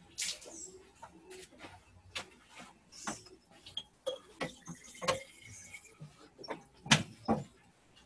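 Scattered knocks, clicks and light clatter of objects being handled and set down while the paint water is being changed, the sharpest knocks near the start and about seven seconds in.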